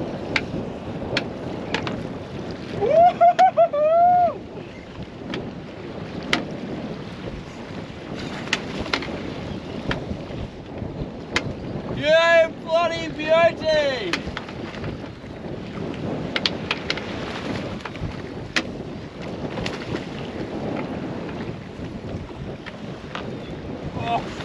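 Wind on the microphone and choppy sea around a small open boat: a steady rush of noise with scattered sharp knocks throughout.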